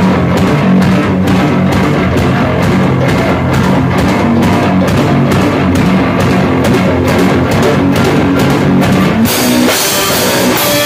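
Live rock band playing loud, with electric guitar over a steady drum-kit beat. About nine seconds in the arrangement shifts and a wash of cymbals comes in.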